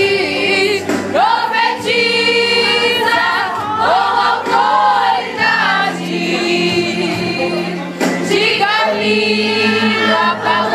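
Women's gospel choir singing together, with long held notes.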